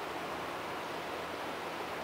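Steady, even hiss of outdoor background noise, with no distinct events.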